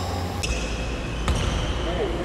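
Basketball game on a hard indoor court: sneakers squeaking on the floor and the ball thudding once, about a second and a half in, with players calling out.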